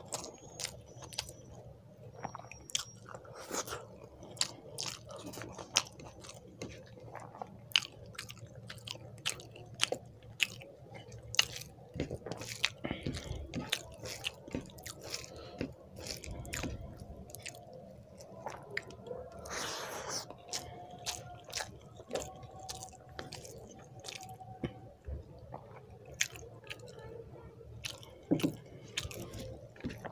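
Close-miked chewing of rice and fried egg eaten by hand: wet mouth smacks and sharp clicks at irregular intervals, with fingers squishing and mixing rice on the plate between mouthfuls.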